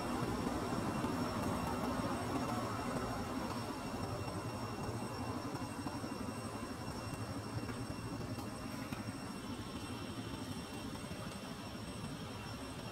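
Steady low rumble and hiss of background noise, with a few faint, steady high-pitched tones over it.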